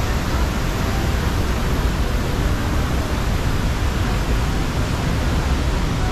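Steady, loud rush of water from a waterfall and the fast-flowing river rapids below it.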